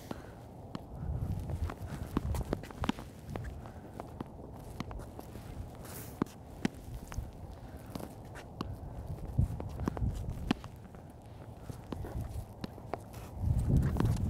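Solid Spec Tennis paddles hitting a ball back and forth in a rally: sharp pops roughly every second or so, mixed with the ball bouncing and shoes scuffing and stepping on the hard court, over a low steady rumble.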